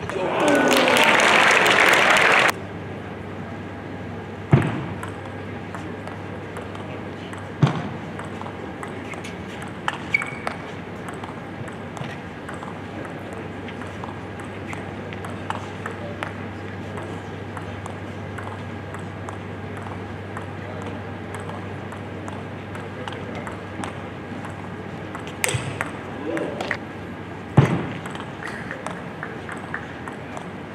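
A loud shout for about two seconds, cut off abruptly. Then a table tennis ball's sparse sharp clicks off bats and table, with a short run of them near the end, over a low steady hum.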